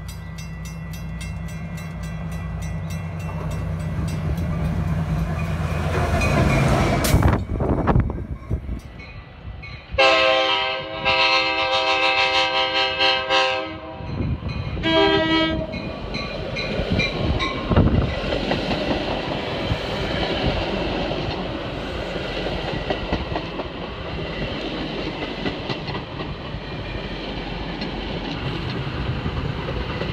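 Metra diesel locomotive rumbling past at close range. Then a train horn sounds one long multi-note blast and a short one. After that, a line of stainless-steel bilevel commuter coaches rolls by with steady rumbling and wheel clatter on the rails.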